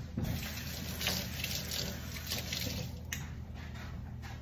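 Kitchen tap running as hands are washed under it, a steady rush of water that cuts off about three seconds in.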